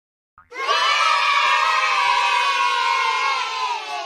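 A group of children giving one long cheer together. It starts about half a second in, holds, then falls slightly in pitch and fades out near the end.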